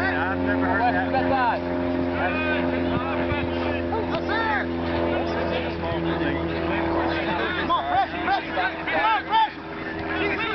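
A steady motor drone holding several tones at once, with distant voices over it.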